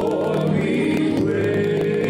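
Gospel singing: voices carrying sustained notes over a steady instrumental accompaniment.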